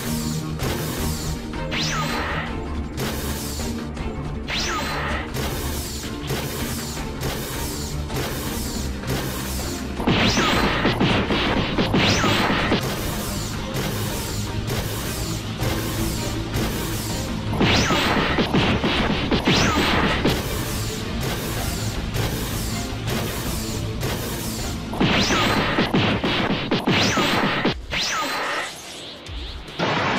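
Cartoon fight sound effects: a steady run of hits, about two a second, then three louder surges of crashing blows with sweeping whooshes, over background music.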